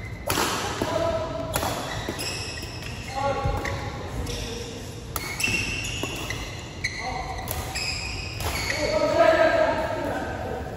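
Badminton rally in a large echoing hall: sharp racket hits on the shuttlecock about every second or so, short high squeaks of court shoes on the floor, and players' voices, louder near the end.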